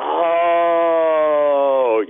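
A man's voice holding one long hesitant vowel, a drawn-out "uhhh" of about two seconds that dips in pitch at the end, stalling before he answers. It comes through a telephone line, so it sounds thin and narrow.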